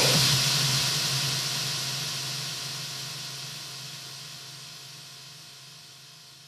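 The hissing tail of a final loud hit at the end of the soundtrack music, dying away evenly over several seconds, with a faint steady low hum underneath.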